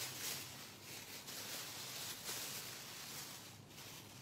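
Thin plastic trash bag liner rustling and crinkling faintly as it is handled and folded, with a few small crackles.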